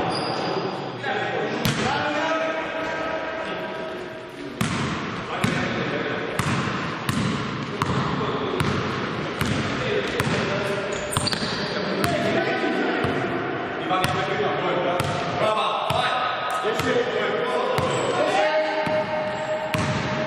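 Basketball dribbled on a sports-hall floor: steady bounces, a little more than one a second, from about five seconds in. Players' voices call out in the hall around the bouncing.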